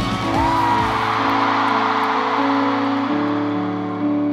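Concert music: slow held chords that change about once a second, with drum hits dying away early on, over a haze of crowd noise from a large audience.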